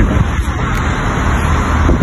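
Road traffic noise in a town street, a steady low rumble.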